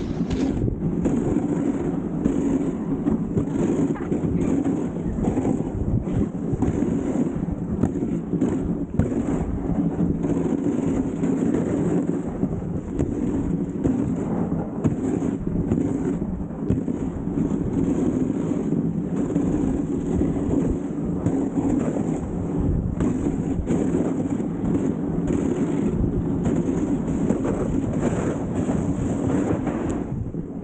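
Dog sled runners sliding over a packed snow trail, a steady rough scraping rumble picked up through the sled, with wind on the microphone.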